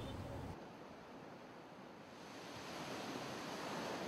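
Faint ocean surf: a steady wash of waves that dips low and then swells back up over the last couple of seconds.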